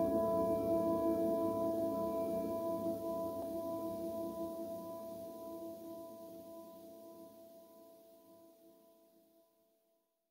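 Lofi track from a Roland MC-707 groovebox ending on a sustained chord of steady tones over a softer low part, fading out evenly to silence.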